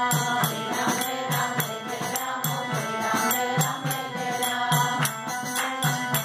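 Devotional bhajan: a woman's voice singing over the sustained chords of a harmonium, with percussion strikes keeping a steady beat, a few a second.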